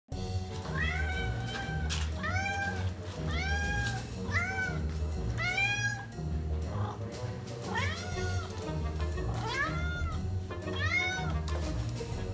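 A Siamese cat meowing over and over: about nine separate meows, each rising and then falling in pitch over about half a second. Background music with a steady beat runs underneath.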